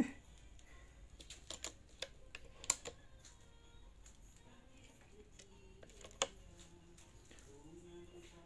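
Faint, scattered clicks and taps of workshop background noise, with two sharper ticks about three and six seconds in.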